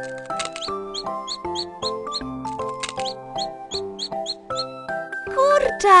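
Light children's cartoon music with a run of short, high, squeaky peeps, about four a second for some three seconds: a cartoon chick peeping inside its cracking egg. A voice near the end is the loudest sound.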